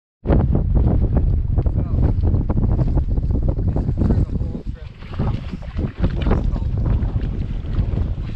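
Wind buffeting the camera microphone: a heavy, gusty low rumble that eases for a moment around the middle.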